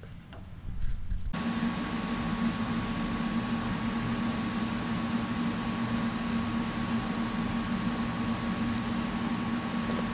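Arc welding with a hand-held wire-feed welding gun, joining a steel plate onto a race car's front spindle bracket. The weld makes a steady hiss over a constant low hum, starting about a second in.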